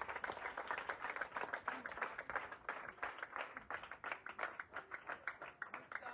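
A group of children clapping, a fast, fairly faint run of many overlapping hand claps.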